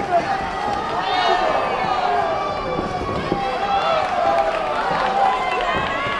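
Several voices shouting and calling out at once in a large sports hall, overlapping with no single clear speaker, with a few faint knocks underneath.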